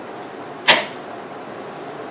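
A rubber-band launcher lets go of a cup flyer made of two foam cups taped bottom to bottom: one short snap-swish about two-thirds of a second in, over steady room hiss.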